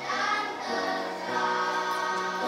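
A children's choir singing together, holding long notes.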